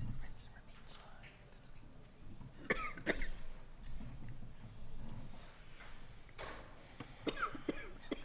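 Audience members in a lecture hall murmuring quietly and coughing, with two clusters of sharp coughs, about three seconds in and again near the end.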